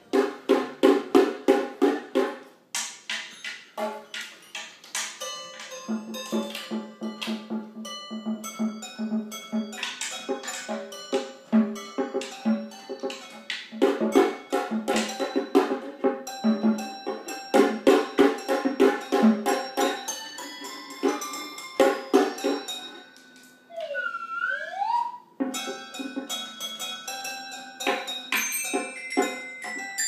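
Child's toy glockenspiel struck with mallets in quick, irregular strokes, its metal bars ringing on several different pitches.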